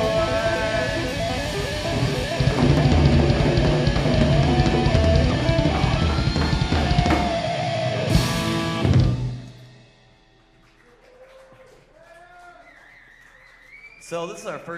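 Rock band playing live at full volume, with electric guitars, bass and drum kit. The song ends on a final hit about nine seconds in, and the sound then drops to a low level.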